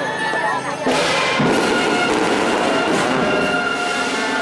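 A brass band playing held notes over the noise and voices of a crowd.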